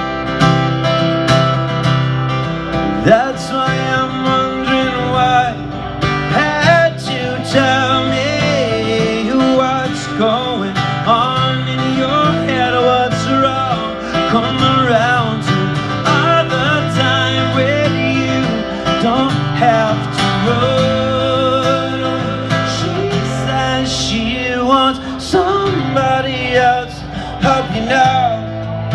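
Live amplified acoustic guitar played by a solo singer-guitarist, with a sung melody gliding over the chords.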